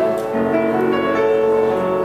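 Piano played live, held chords changing a few times over the two seconds.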